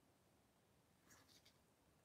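Near silence: room tone, with a few faint short sounds a little past a second in.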